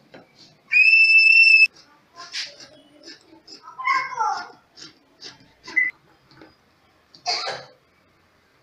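A single steady high-pitched tone lasting about a second, then scissors snipping through fabric in short, separate cuts.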